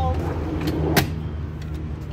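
Dometic fridge drawer slid shut, closing with one sharp knock about a second in and a few lighter clicks around it, over a steady low hum.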